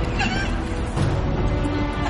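Dark film score with low sustained drones, over which a high, wavering, wail-like cry rises and falls.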